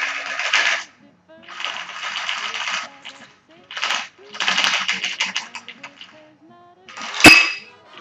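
Ice rattling inside a metal cocktail shaker in four bursts of about a second each as a thick cream cocktail is shaken out through the strainer into a glass. About seven seconds in there is one sharp metallic clink that rings briefly.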